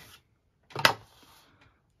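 Cardboard packaging of a watch-band box: a short scrape and one sharp snap a little under a second in, as the inner tray is pulled out of its sleeve.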